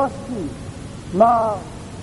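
A man's voice between words: a syllable trailing off at the start, then, a little past the middle, one drawn-out vowel that rises and falls in pitch.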